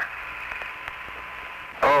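Steady hiss of the Apollo 15 radio link from the lunar surface in a pause between transmissions, thin and cut off above the voice range. An astronaut's voice comes back in near the end.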